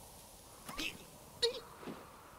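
Scrat, the animated sabre-toothed squirrel, giving three short squeaky calls, about a second in, halfway through, and near the end.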